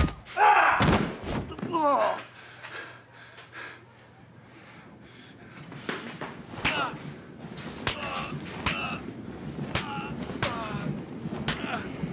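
Physical scuffle in a workshop: shouts and a heavy thud in the first two seconds, then after a brief lull a run of irregular knocks, bangs and clatters with short grunts.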